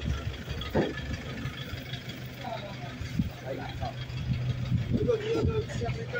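Street sounds: indistinct voices talking in the background, heard mostly in the middle and near the end, over a steady low hum of an idling vehicle engine.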